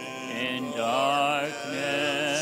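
Sung liturgical music: a voice with a wide vibrato holds long notes over steady sustained accompaniment, with a short break between phrases about a second and a half in.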